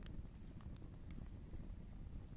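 Faint crackling fire: small irregular pops over a low, steady rumble, with a thin high whine underneath.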